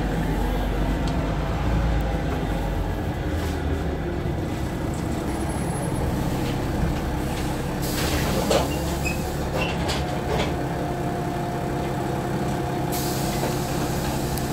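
Cabin sound of a Wright-bodied Volvo single-deck bus: its diesel engine drones steadily under scattered knocks and rattles from the seats and floor, which the uploader reports as faulty and moving. Short hisses of compressed air come about eight seconds in and again near the end.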